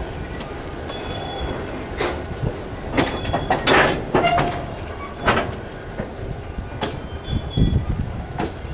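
Freight train hopper wagons rolling past on the rails: a steady rumble of steel wheels on track, broken by irregular metallic clanks and knocks from the wagons and couplings, with a few brief thin wheel squeals.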